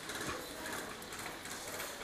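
Faint, rapid mechanical clicking and rattling, typical of airsoft guns firing.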